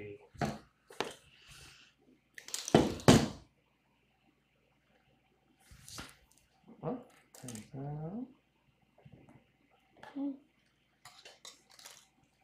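Small handling sounds of thin copper wire being bent into shape by hand: scattered light clicks and rustles, with a louder noisy burst about three seconds in and a few brief murmured voice sounds.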